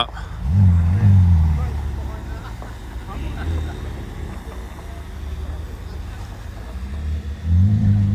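Ferrari F8 Tributo's twin-turbo V8 starting up: the revs rise and fall in a start-up flare about half a second in, then it settles to a lower, steadier idle, and the revs swell again near the end.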